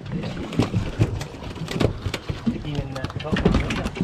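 Irregular knocks and thumps in a boat as a freshly caught fish is brought aboard and lands and moves on the deck, with low voices under it.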